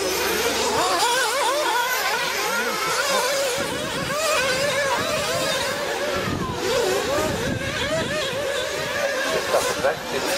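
Several nitro-powered RC buggy engines racing at once, their high-pitched whine rising and falling rapidly and overlapping as the cars accelerate and brake round the track.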